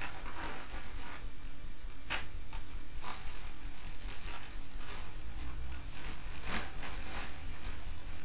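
Clear plastic bag and card packaging crinkling and rustling as a mask is pulled out by hand, in irregular crackles that are loudest about two seconds in and again about six and a half seconds in. A steady low hum runs underneath.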